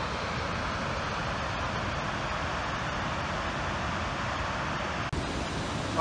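Large waterfall pouring down a rock face: a steady, even rushing of falling water, with a brief break about five seconds in.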